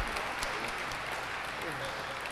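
Audience applauding steadily, a dense patter of claps with faint voices underneath.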